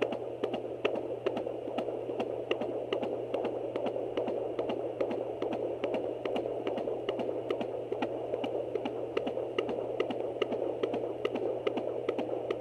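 Handheld fetal Doppler's speaker playing a baby's heartbeat: a rapid, even galloping whoosh, about two and a half beats a second. The rate reads about 150 beats a minute, faster than this baby's usual upper 130s to low 140s.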